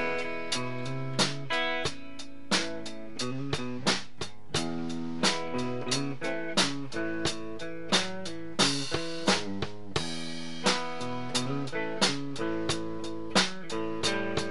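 Instrumental band music: strummed guitar chords over a drum kit keeping a steady beat.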